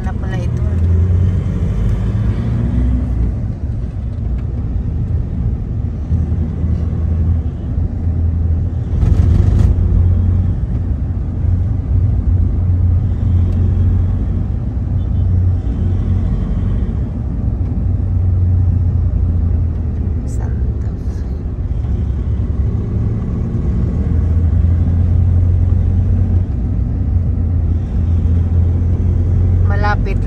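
Steady low rumble of a passenger van's engine and road noise, heard from inside the cabin while driving, with a brief rushing noise about nine seconds in.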